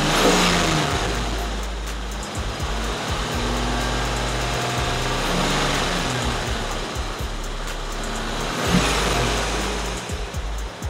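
Swapped-in 5.3 LS V8 running at low revs, heard from inside the car's cabin, with a brief rise in loudness near the end. The engine is making low oil pressure, which the owner puts down to a worn engine needing new main or rod bearings.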